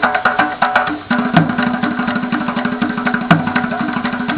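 Several hand drums, djembes among them, played together in a fast, dense rhythm of quick slaps and tones, with a deeper, louder bass stroke about every two seconds.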